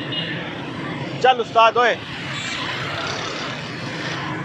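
Steady noise of busy road traffic passing: cars and motorbikes going by on a multi-lane city road.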